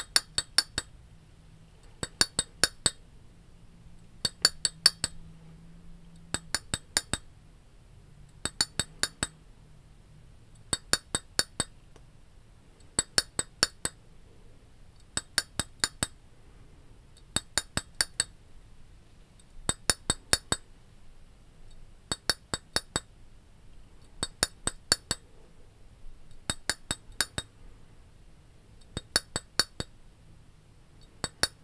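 Fingers tapping on a small glass jar, sharp clinks in quick clusters of four or five taps, one cluster about every two seconds in a steady rhythm.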